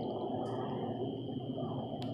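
Steady outdoor background noise, a low even rumble with a constant high-pitched whine running through it and a short hiss about half a second in.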